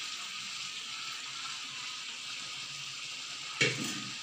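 Mutton curry with gongura paste sizzling steadily in a non-stick kadai. A single sharp clank against the pan comes near the end.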